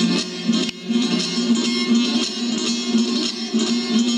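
Solo bağlama (Turkish long-necked lute) playing an instrumental phrase of quick plucked notes over a steadily sounding low note, with a brief break in the playing just under a second in.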